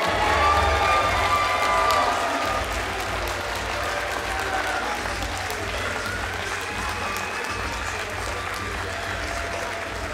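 Audience applauding, with music playing that starts with a heavy bass just as the clapping begins.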